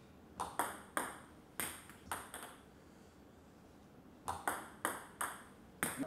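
Table tennis ball struck with a bat and bouncing on the table during serves, heard as short sharp clicks. They come in two quick runs of about five each, the second starting about four seconds in.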